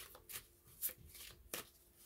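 Tarot cards being handled: a few faint, separate soft clicks and rustles of cards being moved.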